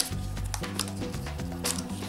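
Background music with soft, steady low notes, joined by a few light clicks as cosmetics are handled.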